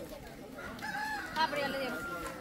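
A rooster crowing once, starting about half a second in and ending on a long held note, over low background chatter.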